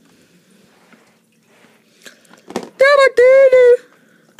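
A small knock, then a loud, high-pitched yell in two quick parts lasting about a second near the end: a cartoon-style cry as the toy figure falls over.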